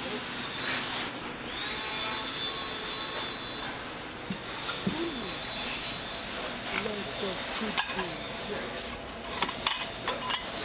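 Canteen room sound: indistinct voices in the background over a steady hum, with a thin steady high-pitched whine. A few sharp clinks of dishes come near the end.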